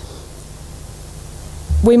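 A pause in a woman's talk filled only by steady low hum and faint hiss from the sound system. She starts speaking again near the end.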